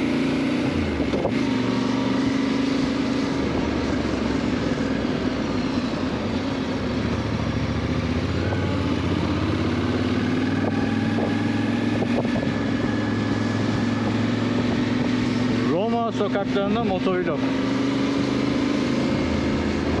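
Yamaha Ténéré 700's parallel-twin engine running as the motorcycle rides through city traffic, its pitch rising and falling with the throttle, over steady wind and road noise. A short wavering tone cuts in briefly late on.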